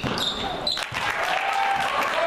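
Indoor basketball game sounds on a hardwood court: a basketball bouncing and sneakers squeaking as a free throw goes up and play restarts, with crowd voices rising about a second in.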